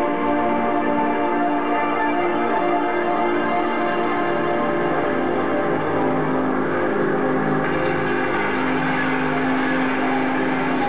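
Live electronic music: sustained synthesizer chords with bell-like tones. A steady low held note comes in about six seconds in.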